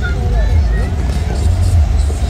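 A classic Chevrolet Impala lowrider's engine running with a low, steady rumble as the car rolls slowly past close by, over a background of crowd chatter.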